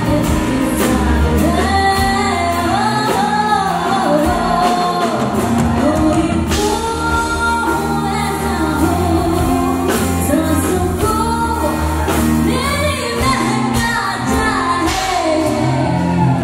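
A woman singing a Bollywood song with a live band, keyboard and harmonium accompanying her over a steady beat.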